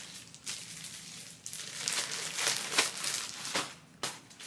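Rustling and crinkling of clothes and their packaging being handled as a shirt is put aside and the next one taken out, busier from about one and a half seconds in.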